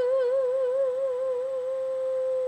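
A woman singing unaccompanied, holding one long note with a wide vibrato that settles into a steadier tone in the second half.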